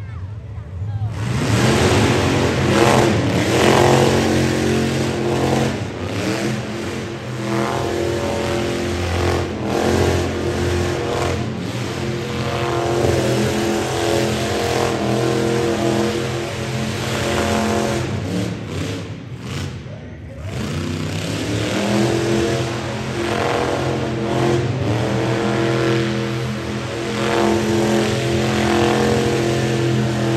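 Hot rod engine held at high revs during a burnout, its rear tyres spinning on the concrete floor. The revs drop briefly about two-thirds of the way through, then climb again.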